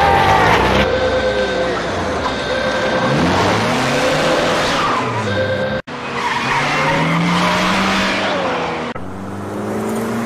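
A van's engine revving hard and changing pitch as it speeds away, with repeated long tyre squeals as it corners. The sound drops out for an instant about six seconds in.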